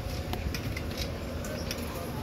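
Outdoor ambience with an uneven low rumble on the microphone, faint distant voices and a few scattered clicks.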